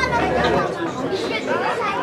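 Several voices talking at once near the microphone, a steady chatter with no other clear sound.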